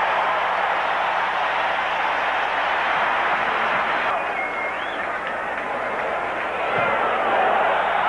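Large football stadium crowd cheering steadily after a touchdown.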